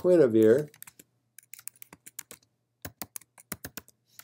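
A drawn-out spoken "uh" at the start, then a quick, irregular run of computer keyboard keystrokes as a file name is typed.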